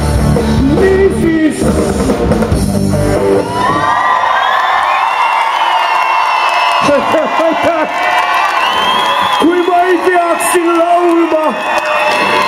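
A live rock band with drum kit plays the closing bars of a song and stops about three and a half seconds in. A large crowd then cheers and whoops.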